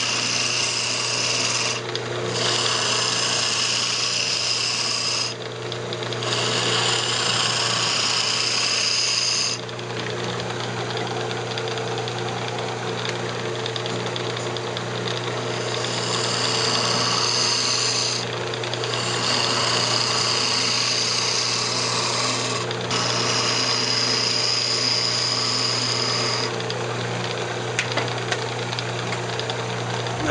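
Wood lathe running with a steady hum while a turning tool cuts into the spinning cocobolo, hollowing out the inside of a small box. The cutting comes in passes of a few seconds with short breaks between them. Near the end the cutting stops and the lathe runs on alone.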